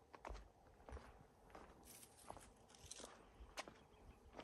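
Faint footsteps of a walker at a steady pace, a step about every two-thirds of a second, with a brief hiss near the middle.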